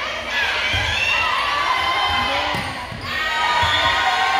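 A series of dull thuds from a volleyball being hit and players moving on a hardwood gym floor during a rally, with spectators' and players' voices calling out.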